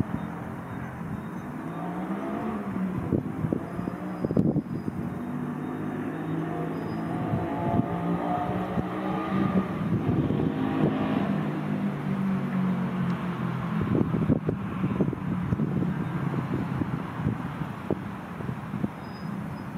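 An engine running steadily, its pitch wavering slowly up and down, with scattered clicks and knocks over it.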